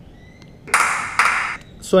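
Hand clap played back from two not-yet-synchronised recordings of the same clap, heard doubled with an echo. It starts about three-quarters of a second in and fades out over most of a second.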